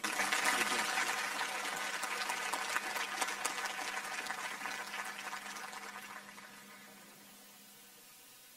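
Applause from a crowd, starting at once and dying away over about six seconds, with a faint steady hum underneath.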